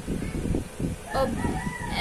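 A rooster crowing: one long held call in the second half, under a woman's speech.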